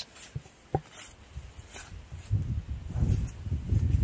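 A horse sniffing and breathing right at the camera microphone, with muffled rubbing of its muzzle against it, building up from about halfway through. The first half is quiet apart from a few faint clicks.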